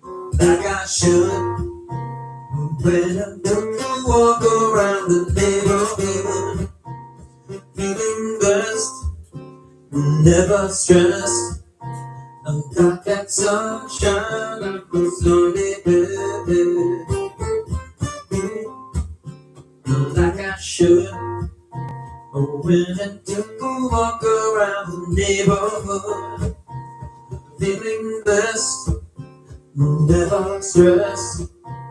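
A man singing live while strumming and picking an acoustic guitar, his vocal lines coming in phrases with short breaks between them.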